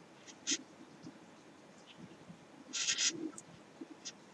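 A metal crochet hook working yarn into loose slip stitches, faint: short scratchy rasps as the yarn is drawn through, once about half a second in and twice in quick succession near three seconds.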